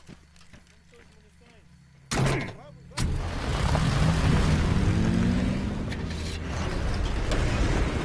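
Jeep and army truck engines come in loudly and suddenly about three seconds in and keep running as the convoy pulls away, the engine note rising as they accelerate.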